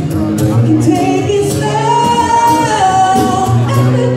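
A man singing an R&B song live into a microphone, accompanied by acoustic guitar. In the middle he holds one long high note.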